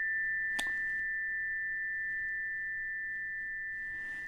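Two tuning forks from a one-octave chakra set, the D and E, struck one against the other and ringing together as a steady high two-note tone that fades slowly. A light click sounds about half a second in.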